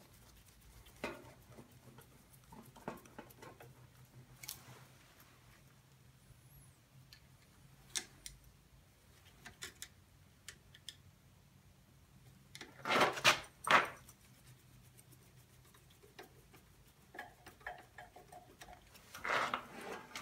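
Scattered small metal clicks and scrapes of a screwdriver working the hose clamps on an engine's rubber fuel line, with a louder burst of handling clatter about thirteen seconds in.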